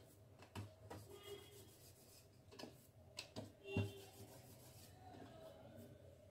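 Rolling pin working puri dough on a round wooden board: faint rubbing with a few light knocks, the loudest about four seconds in.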